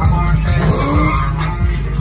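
The LSX-swapped 1980 Chevrolet Caprice's V8 revs up, rising in pitch about half a second in, as the tires skid on the pavement.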